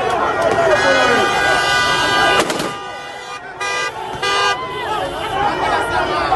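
Vehicle horn sounding one long blast of about two seconds, then two short toots, over a crowd of people shouting.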